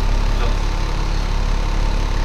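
Military truck's diesel engine idling steadily: a loud, even low rumble.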